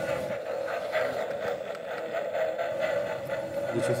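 Toy lie-detector shock machine giving a steady electronic hum while it scans the hand strapped to it, the stage before it gives its verdict.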